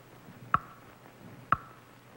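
Stage countdown clock ticking: two sharp ticks a second apart, each with a short ringing tone, as the time runs out on the stunt.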